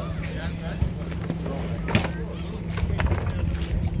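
A steady low motor hum with wind rumble on the microphone and faint voices, and one sharp knock about two seconds in.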